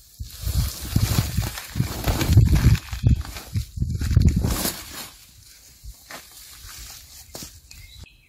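Rustling and handling noises as a blueberry bush's bared root ball, just freed from its cut plastic pot, is lifted and moved about on a plastic tarp, with leaves and plastic rustling. The noise is busiest over the first five seconds, then settles to a few light clicks.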